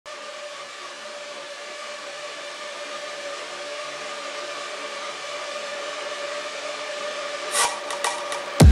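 A steady, machine-like drone: an even hiss with two steady hum tones, slowly growing louder, with a short sharp whoosh near the end.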